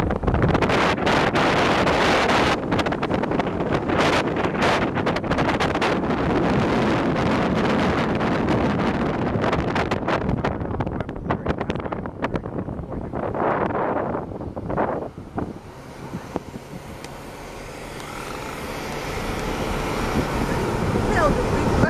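Wind buffeting the microphone of a moving car, with the car's road and engine noise underneath. The buffeting eases about two thirds of the way through, and the noise builds again near the end.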